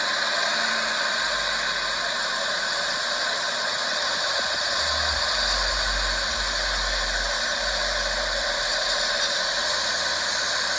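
Steady hiss of road traffic with a low engine rumble from passing pickup trucks, the rumble growing stronger about five seconds in. No gunshots stand out.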